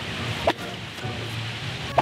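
A single sharp snap of a Stinger tactical whip being swung at a watermelon, about half a second in, over background music.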